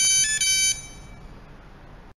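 Electronic locker lock's keypad buzzer playing a short tune of a few stepped electronic notes, ending under a second in, followed by faint room noise.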